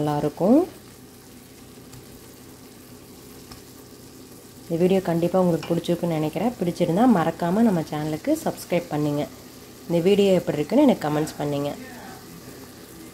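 A faint, steady sizzle of ridge gourd poriyal frying in a nonstick pan, heard alone for the first few seconds. A person's voice then speaks in two stretches over it.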